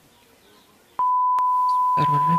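A steady 1 kHz test-tone beep, the bars-and-tone signal that goes with TV colour bars, starting abruptly about a second in after a faint first second, with one short click partway through.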